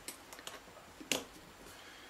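Faint clicks and ticks of a screwdriver and small metal parts being handled on an RC helicopter's aluminium tail gearbox as a screw is loosened, with one sharper click about a second in.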